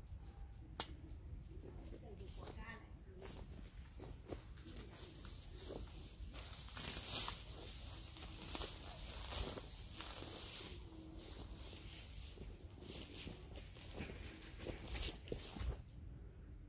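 Bougainvillea leaves and branches rustling as a person pushes through the bush and the undergrowth beneath it, with scattered sharp clicks and snaps of twigs; the rustling is loudest about seven seconds in and again near the end.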